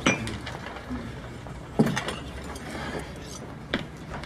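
Coffee-shop crockery and cutlery clinking: three sharp clinks of china and spoons, about two seconds apart, over steady diner background noise.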